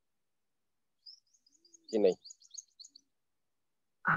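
A small bird chirping: a quick run of about ten short, high chirps lasting about a second, heard faintly over a brief spoken word.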